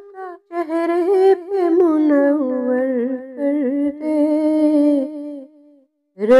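A woman singing a naat unaccompanied: one long wavering vocal phrase, its pitch slowly falling, trailing off near the end.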